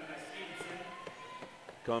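Basketball gym ambience during live play: faint crowd voices and players running on the court. A commentator's voice comes in near the end.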